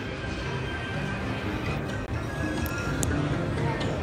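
Slot machine music and electronic chimes, steady and moderately loud, with faint crowd chatter behind. The Dancing Drums machine is waiting on its bonus feature-selection screen.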